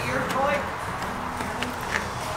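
Long-handled wash brush scrubbing wet, soapy car paint, a steady hiss of bristles on the hood and bumper, with a faint murmur underneath.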